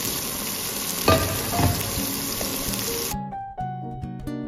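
Salmon fillets sizzling and frying in hot oil in a nonstick frying pan. About three seconds in, the sizzling cuts off and plucked-string background music begins.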